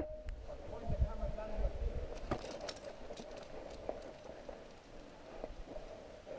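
Low wind rumble on the microphone for the first two seconds, then a few faint clicks and taps of climbing gear and footsteps on rock, with a faint voice in the background.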